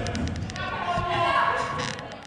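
Floorball play in a reverberant sports hall: repeated sharp clicks of sticks and the plastic ball. A player shouts a long call through the middle of it.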